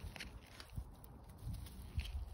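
Faint footsteps and rustling on dry grass stubble: a few soft, low thumps and a brief click near the start.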